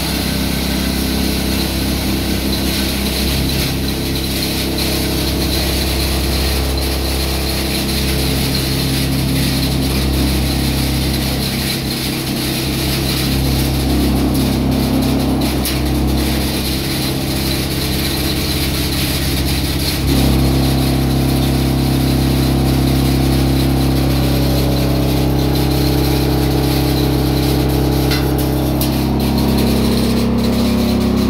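Charcoal hammer mill, belt-driven by an electric motor, running steadily with a low hum while grinding charcoal into powder. About 20 s in, the machine's sound shifts and grows slightly louder.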